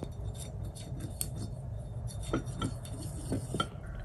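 Paintbrush tapping and scraping against the wells of a ceramic paint palette while mixing watercolour, a few light clicks over a faint low hum.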